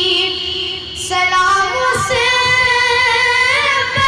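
A boy singing a naat into a microphone, with long held notes and ornamented turns. There is a short break for breath about a second in, then one long note that rises near the end.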